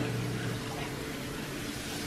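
Steady background hum and hiss of room tone, with a few faint steady hum tones and no distinct event.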